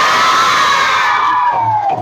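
A group of schoolchildren cheering together in one long, high-pitched shout that rises slightly and then falls away, ending about two seconds in.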